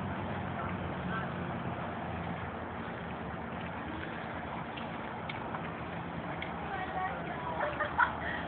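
Indistinct chatter of a group of girls some way off, over a steady outdoor background noise; a low hum fades out in the first second or two.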